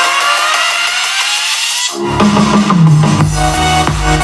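Electronic music played loud through a JBL Xtreme 2 Bluetooth speaker: a rising build-up with the bass dropped out, then about two seconds in the drop lands with heavy bass and a beat.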